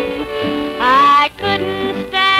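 Country music from a 1950 radio recording: a woman singing over accordion, with bass fiddle and acoustic and electric guitars backing her. A held note scoops upward about a second in and breaks off briefly before the next phrase.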